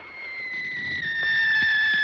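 A single long whistle, sliding slowly down in pitch and growing louder.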